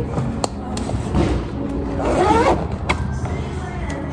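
A tall leather riding boot being pulled off and handled, with a few clicks and a rising rasp about two seconds in.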